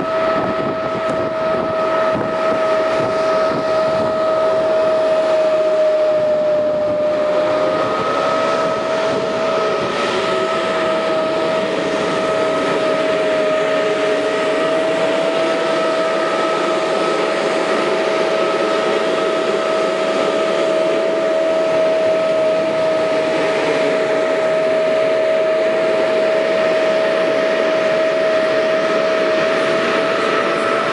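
Tractor-drawn air-blast sprayer running while it blows disinfectant mist, its fan giving a steady whine over a rushing of air and engine noise.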